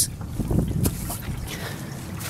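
Water running into a glass aquarium sump and spilling over its baffle, with gusts of wind rumbling on the microphone.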